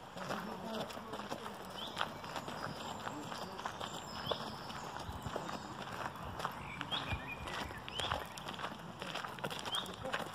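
Footsteps on a gravel path, a run of short crunching clicks, with a few brief high chirps rising in pitch scattered through.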